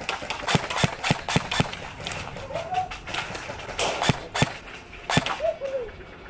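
A quick, irregular series of sharp clacks and knocks, several a second at first and then more scattered, with two brief pitched calls in between.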